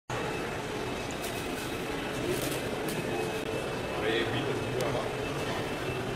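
Steady indoor hall ambience: a continuous background hum with indistinct voices of people talking nearby, and a few faint ticks.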